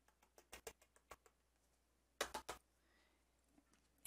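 A few faint light clicks and taps, with a small cluster of slightly louder ones a little past two seconds: embossing powder being spooned onto a stamped card and the card tapped over a plastic powder tub to shake off the excess.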